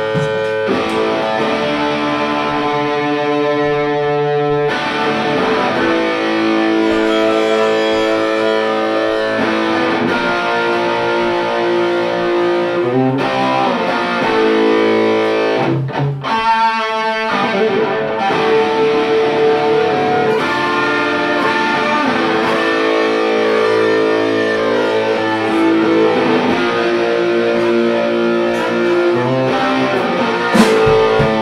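Live band playing an instrumental passage led by guitar, with long held notes; about halfway through the music briefly breaks with a short sweeping sound before picking up again.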